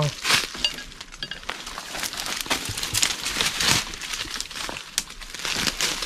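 Footsteps crunching through dry leaf litter and brushing through twigs and branches in dense scrub, an irregular run of rustles and crackles.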